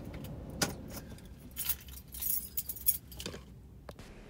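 A bunch of keys jingling in a few short rattles, over a faint low rumble.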